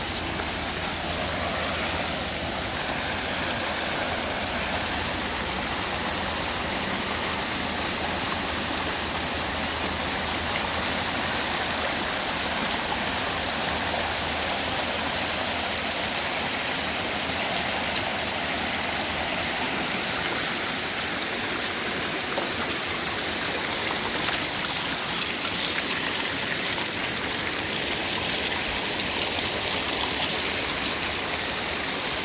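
Shallow, rocky mountain stream flowing steadily over and between stones.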